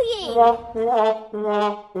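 Comedic trombone sound effect of three short held notes, played as a sad-trombone gag.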